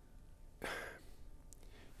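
A man's single audible breath, about a quarter second long, a little after half a second in, against low room tone. It is the pause of someone drawing breath before he goes on speaking.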